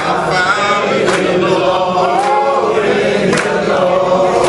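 A group of male deacons singing together, many voices in a slow, swaying song. A sharp beat marks time about once a second.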